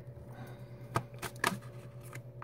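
Tarot cards being shuffled by hand: a soft rustle of cards with three light clicks in the second half.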